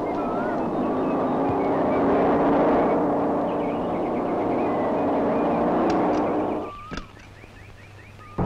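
Car engine running as the car drives up, cutting off abruptly about seven seconds in. Birds chirp throughout and are heard more plainly once the engine stops.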